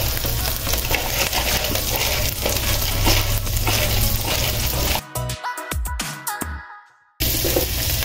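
Shrimp, garlic and onion sizzling steadily in hot oil in a wok. About five seconds in, the sizzle breaks up into a choppy stretch, cuts out completely for about half a second, and then resumes.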